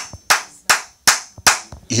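Hands clapping in a steady rhythm, about two and a half sharp claps a second, each one short with a brief ring of room echo.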